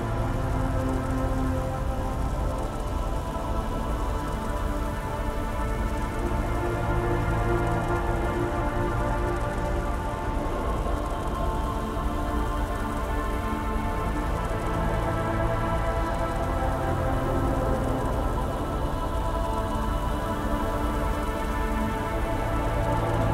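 Dark ambient music: slow synth drones and many held tones with a deep low drone, layered over a continuous, even noise bed of sound-design ambience. Nothing starts or stops; the texture stays unchanged throughout.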